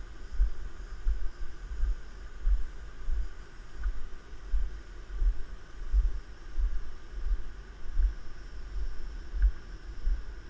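Footsteps of a person walking on a wooden plank boardwalk, picked up through a head-mounted camera as dull, regular thumps about one and a half times a second, over a faint steady hiss.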